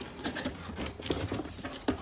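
Cardboard helmet box being opened by hand: irregular rustling, scraping and tapping of the flaps, with one sharper click near the end.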